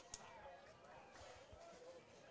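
Near silence at the ballpark, with faint distant voices from the stands.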